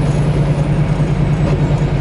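Semi truck's diesel engine and road noise at highway speed, heard inside the cab: a steady low drone with a pulsing rumble beneath.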